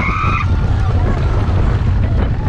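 Wind buffeting the microphone of an on-board camera on a moving roller coaster, a heavy low rumble, with a rider's high-pitched scream that ends about half a second in.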